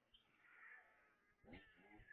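Faint cat-like mewing calls, with a lower pitched sound coming in about one and a half seconds in.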